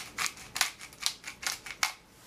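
Grinder cap of a jar of black peppercorns being twisted, cracking peppercorns in a run of quick gritty crunches, about four a second.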